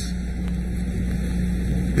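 A steady low hum and drone in the microphone feed, with no change through the pause.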